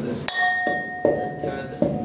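Pestle pounding in a mortar: about five strokes in two seconds, one every 0.4 s or so, the first a sharp clink that rings on.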